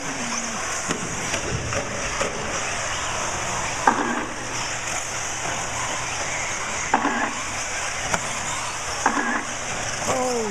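Several 1/8-scale off-road RC buggies racing together on a dirt track, a steady high-pitched whine from the pack. Three brief sharper sounds break through, about four, seven and nine seconds in.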